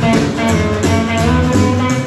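Live rockabilly band playing an instrumental break: guitars, steel guitar, double bass and drums, with a steady beat and no singing.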